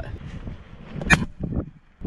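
A single shot from a Crosman 1377 .177-calibre pump pneumatic pellet pistol, pumped ten times: one sharp, short crack about a second in.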